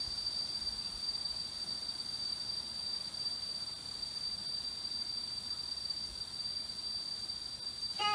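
Insects calling in one steady, unbroken high-pitched drone, over a faint background hiss.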